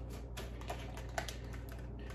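A tarot deck shuffled by hand: cards slide and tap against each other in a run of light, irregular clicks, over a low steady hum.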